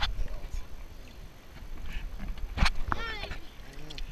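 Water sloshing against a waterproof camera held at the sea's surface, with a steady low rumble and scattered knocks of handling. A sharp knock comes about two and a half seconds in, followed by a short high-pitched voice whose pitch bends up and down, and a brief lower voice near the end.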